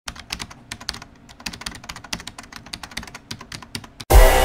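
Typing on a computer keyboard: a quick, uneven run of key clicks that stops just before the end.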